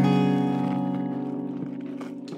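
Acoustic guitar in open D tuning, a single A7(♭9) chord ringing and slowly dying away. It is fingered with a half barre across the top three strings at the first fret plus one finger at the second fret.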